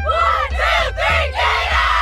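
A soccer team breaking its huddle with a shouted chant in unison, the short calls giving way to one long collective shout about a second and a half in. Background music with a steady bass runs underneath.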